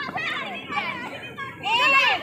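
Young children's voices calling and chattering, with a louder high-pitched shout near the end.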